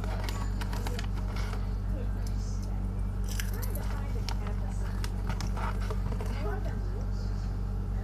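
Close-miked crunching and chewing of a crisp snack, with short clusters of crackly bites, and the plastic snack bag crinkling as a hand reaches in. A steady low electrical hum from the microphone runs under it.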